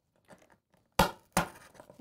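Corrugated cardboard box being handled: two sharp knocks about half a second apart, then light scraping and rustling of cardboard.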